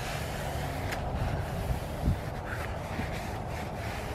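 A paper towel wiping and rubbing along a white window box, with a few faint brushing strokes and one soft bump about two seconds in, over a steady low outdoor rumble.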